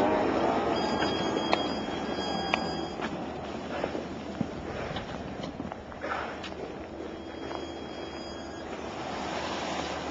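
An electric-converted Jeep drives across snow, its tyres crunching, with a thin high whine during the first few seconds. The sound grows quieter through the middle as the Jeep moves away.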